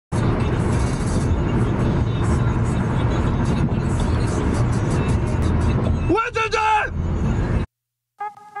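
Steady road and wind noise inside a Honda car's cabin at highway speed, heavy in the low end. A man's brief voice rises over it about six seconds in, and the sound cuts off abruptly just before the end.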